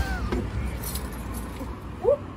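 A knock right at the start, then faint light jingling clicks over steady outdoor background noise.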